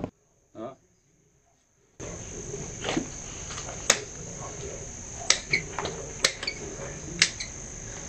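Pruning shears snipping branches of a red loropetalum bonsai, four sharp clicks about a second apart, over a steady high-pitched whine in the background.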